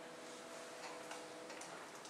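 The last held chord of an electronic keyboard piece, soft and steady, dying out about one and a half seconds in, with a few faint clicks.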